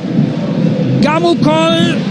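Football TV commentary: a commentator's long, drawn-out exclamation in the second half, over a steady haze of stadium crowd noise.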